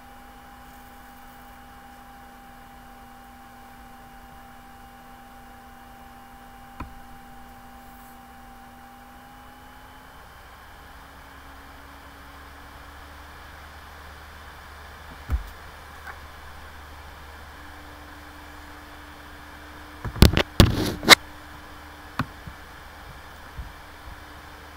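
Quiet room tone with a faint steady hum, broken by a single knock about 7 seconds in and another about 15 seconds in, then a quick cluster of sharp clicks and knocks about 20 seconds in, typical of handling a laptop and clicking its controls.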